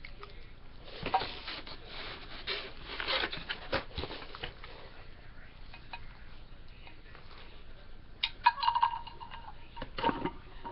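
Parts of a heavy, collapsible serving stand knocked and clinked together as it is assembled by hand: scattered knocks, most of them in the first four seconds, and a short ringing clink near the end.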